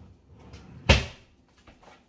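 A kitchen cupboard door bangs shut once, about a second in, a single sharp knock that dies away quickly.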